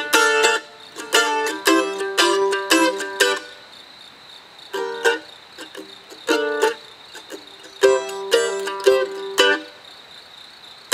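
Solo mandolin playing an instrumental break: short phrases of picked notes separated by brief pauses, the longest pause about three and a half seconds in.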